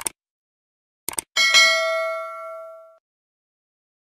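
Subscribe-button sound effect: a mouse click, two quick clicks about a second in, then a bright notification-bell ding that rings and fades over about a second and a half.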